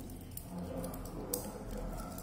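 Faint handling noise as a wristwatch is put on and fastened on the wrist, with two light clicks about a second apart.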